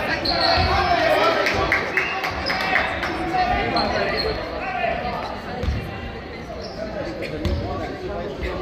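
A basketball bouncing on a wooden gym floor during play, irregular thuds among players' voices, echoing in a large sports hall.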